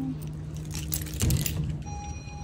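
A shop's glass-paneled front door being pushed open, with a dull thump about a second in, over a steady low hum.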